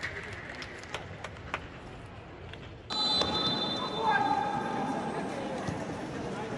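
Faint outdoor stadium sound with a few clicks, then about three seconds in a sudden switch to louder football-pitch ambience with players' voices calling out.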